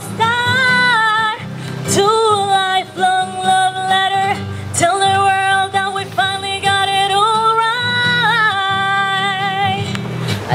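A woman singing into a microphone in long held notes, accompanied by an acoustic guitar.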